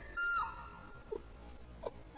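A young man wailing and sobbing: one high cry falling in pitch just after the start, then short separate sobs.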